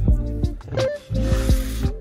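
Background music with a beat: low drum hits that drop in pitch, over held chords.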